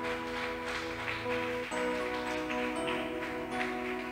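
Electric keyboard holding sustained chords, moving to a new chord a little under halfway through.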